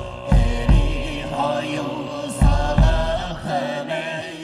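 Mongolian throat-singing music: deep, droning chanted vocals with held, wavering tones over a low drum that beats in pairs about every two seconds.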